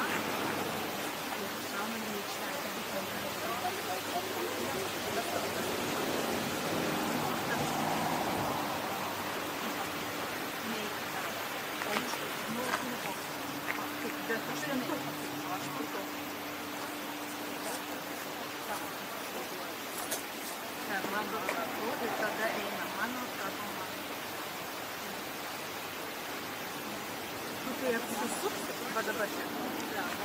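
Steady outdoor background noise, an even rushing hiss, with faint distant voices now and then.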